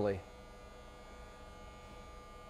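Faint steady background hum in a truck shop bay, with a few thin, unchanging tones running through it.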